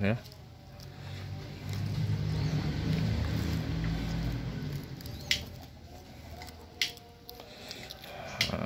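Plastic wrapping film being wound and pressed around a grapevine graft by hand, with soft rustles and a few small clicks. A low rumble swells and fades in the middle.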